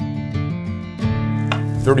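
Intro theme music on strummed acoustic guitar, with a new chord struck sharply about halfway through.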